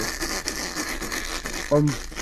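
A man laughing hard and breathlessly, in airy, mostly unvoiced gasps, then starting to speak near the end.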